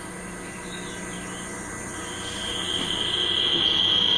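Nature documentary soundtrack played back over classroom speakers: a soft hiss, then a steady high-pitched whine that starts about halfway through and grows louder.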